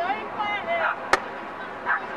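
A single sharp crack about a second in: a field hockey stick striking the ball.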